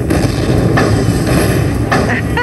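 Buffalo Link slot machine's bonus sound effects: a loud, deep, continuous rumble while the win meter tallies up. A brighter hiss joins about two-thirds of a second in.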